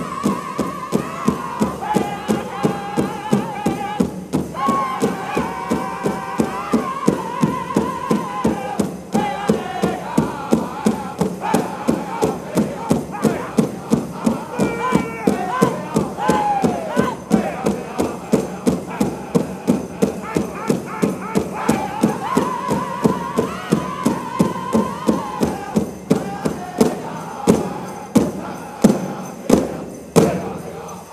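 Pow wow drum group singing in unison over a large shared drum beaten steadily, about two beats a second. The beats grow louder over the last few seconds and the song stops right at the end.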